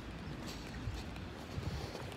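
Footsteps of a person walking: a few light knocks roughly half a second apart over a low, steady rumble from the handheld phone's microphone.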